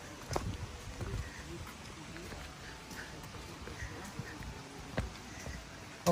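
Footsteps on a rocky dirt trail with faint voices in the background, and a single sharp knock about five seconds in.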